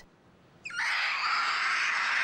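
A young male spider monkey giving one long, harsh scream that starts just under a second in and holds steady, as a syringe needle is put into its arm through the cage bars.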